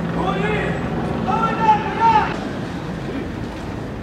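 Two long shouted calls from a voice, the second about a second in, over the low steady hum of vehicle engines.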